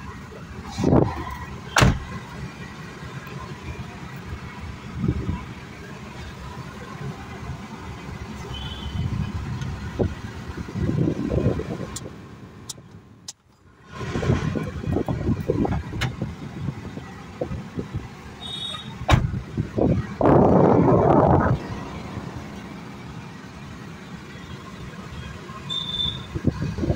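Steady running noise in the cabin of a Maruti Suzuki WagonR with the engine on and the air conditioning running after an AC refrigerant gas recharge. Sharp clicks and knocks of the controls and door come a few times, and a louder rush of noise comes about twenty seconds in.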